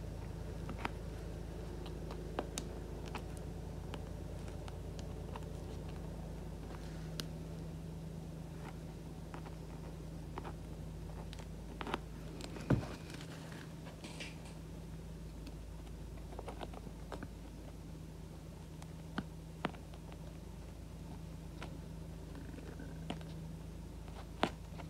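Small scattered clicks and handling noises as curved scissors work a loose stitching thread on a synthetic-leather sneaker, over a steady low electrical hum. One sharper click stands out about halfway through.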